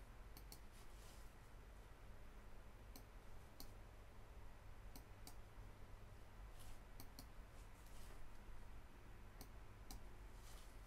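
Near silence: faint room tone with a low hum and scattered faint, sharp clicks, a few each second at most.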